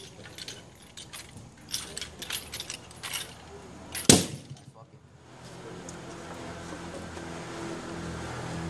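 A wooden hand-held divination palanquin knocks and rattles against a tabletop in a series of irregular taps, the sharpest knock about four seconds in. A low steady hum comes up in the second half.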